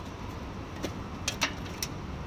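A few light clicks and taps of multimeter test probes and leads being handled against the motor wires and metal casing, the loudest about a second and a half in, over a steady low outdoor rumble.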